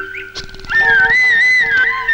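Background film music: a solo flute melody over held accompanying notes. The flute breaks off near the start and comes back in with a rising phrase just under a second in.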